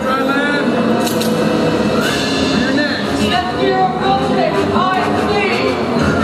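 Several voices talking and calling over one another, too mixed for words to stand out, with music underneath.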